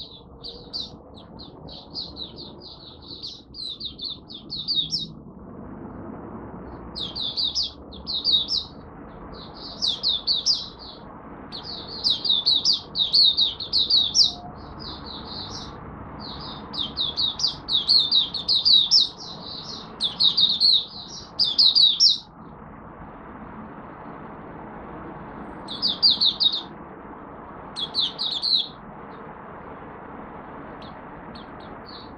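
Caged Malaysian white-eye (mata puteh) singing rapid, high-pitched twittering phrases in runs of a few seconds, with short pauses, over a steady low background hum. The bird is in a minor moult and off form.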